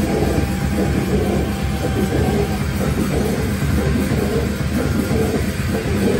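Metal band playing live on amplified distorted electric guitar, bass guitar and drum kit, a dense, steady wall of sound.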